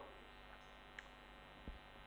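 Near silence: a faint steady electrical mains hum, with two tiny clicks, about a second in and near the end.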